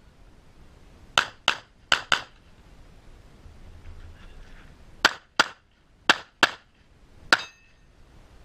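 Pistol shots fired in quick pairs about a third of a second apart: two pairs about a second in, a pause of nearly three seconds, then two more pairs and a single last shot near the end, which is followed by a brief ring.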